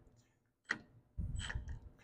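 A single faint click, then a brief low handling rumble, as a cordless impact gun's socket is fitted onto a flange bolt on an engine's gear-reduction shaft. This is the tool being positioned before it is fired.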